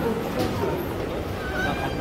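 People's voices talking nearby in a crowded subway station, over a steady low background noise.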